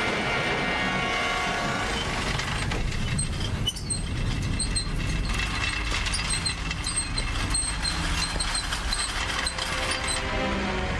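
Steady low rumbling drone of a film's sound design, with short high-pitched electronic blips scattered through the second half.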